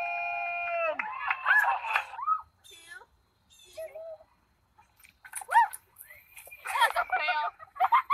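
People's voices: a long held vocal note that breaks off about a second in, then scattered short cries and shouts with quiet gaps between them, busier again near the end.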